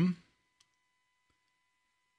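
A man's speaking voice trailing off at the end of a phrase, then a pause of near silence broken by a single faint click.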